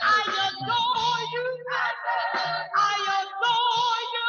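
Church praise team singing into microphones, several voices led by women, with wavering vibrato on held notes over a band that plays steady low bass notes.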